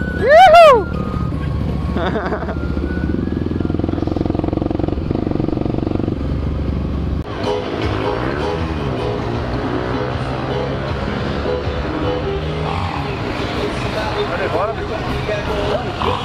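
A Honda XRE 300's single-cylinder engine running steadily as the bike rides along, with a loud whooped 'uhul' just after the start. About seven seconds in, the steady engine drone gives way to a busier mix of motorcycle engines with a wavering pitch.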